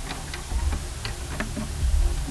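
Glitch-style intro sound effects: a string of sharp, irregularly spaced clicks and ticks over a steady low rumble.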